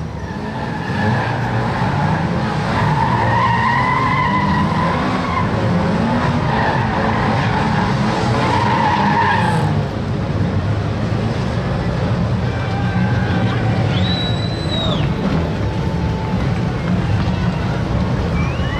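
Saloon stock car engines revving hard, with tyres skidding on the loose dirt track as a car spins in a cloud of dust. The revving and skidding ease just before ten seconds in.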